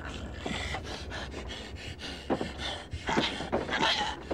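Heavy, ragged panting and gasping breaths from a person in a violent struggle.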